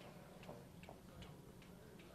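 Near silence with faint, evenly spaced ticks, about two and a half a second.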